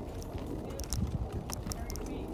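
Wheelchair rolling along a sidewalk: a low rumble from the wheels with irregular clicks and knocks, louder about a second in.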